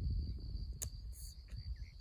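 Steady high-pitched insect chorus of crickets, with a low rumble underneath and one short click a little under a second in.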